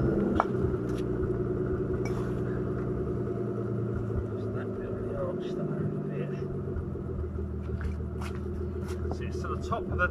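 Nissan Laurel C33's RB20DET turbocharged straight-six idling steadily, with a few light clicks scattered through it.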